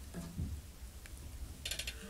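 Faint handling noise: a low rumble with a few scattered clicks, ending in a quick rattle of rapid clicks.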